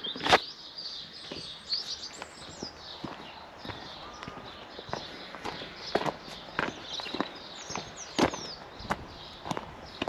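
A person's footsteps, an uneven series of short steps roughly one every half second to a second. Small birds chirp now and then in the background.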